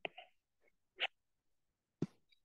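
Mostly near silence, with one short breath sound about a second in.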